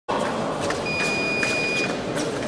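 An electronic fencing scoring-machine tone sounding steadily for about a second, starting just under a second in, over the steady noise of a sports hall, with scattered sharp clicks.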